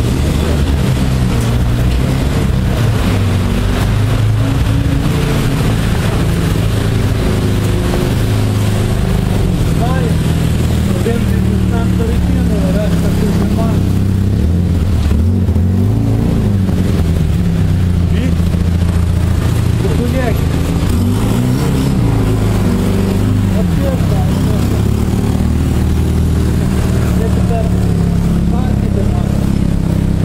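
A loud, steady low rumble with indistinct voices, no words clear enough to make out.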